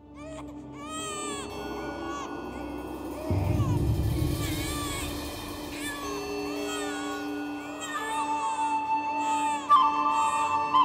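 A newborn baby crying in short rising-and-falling wails over a sustained musical drone, with a low rumble coming in about a third of the way through.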